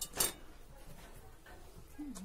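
Soft eating sounds from faces pressed into spongy dhokla on plates: faint mouth smacks and chewing, with a sharp click just after the start.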